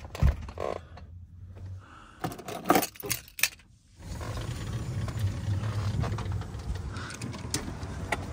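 Several sharp clicks, knocks and rattles of gear being handled inside a minivan, loudest a little before the middle. Then a steady low rumble of open air takes over once the van door is open.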